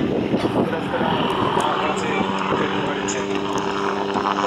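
MD 500 light helicopter flying low and close, its rotor beating in fast pulses over the turbine. A steady pitched hum comes up about halfway through as it draws nearer.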